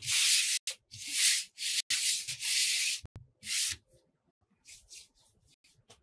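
A hand brushing across the craft surface in about five quick sweeps, wiping away stray strings of dried glue, followed by a few fainter strokes near the end.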